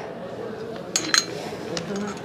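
Clothes hangers clinking against a clothing rack as hanging coats are pushed along it: two sharp clinks about a second in, then a fainter click near the end.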